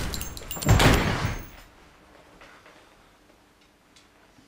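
Heavy thud of a blow from behind dying away, then a second, longer crash about three quarters of a second in.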